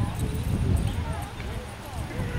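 Indistinct voices of a small group of people talking at a distance, no words made out, over a steady low rumble.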